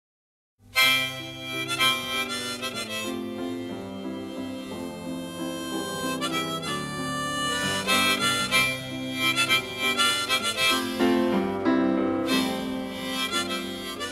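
Live harmonica melody over piano, the instrumental introduction of a song, starting just after a moment of silence.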